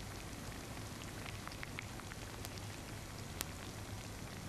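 Steady rain falling, with scattered drop ticks and one sharp click about three and a half seconds in, over a low steady hum.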